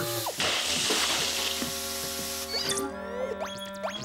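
Cartoon sound effect of a hissing spray, like water jetting from a pipe, lasting about two and a half seconds and stopping suddenly, over background music. The malfunctioning robot is causing it. After the spray stops, the music carries on with quick sliding notes.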